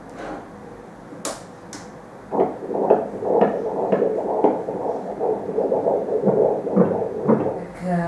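Fetal heartbeat played through an ultrasound machine's Doppler audio: a rhythmic whooshing pulse, about two beats a second, starting about two seconds in. Two sharp clicks come just before it.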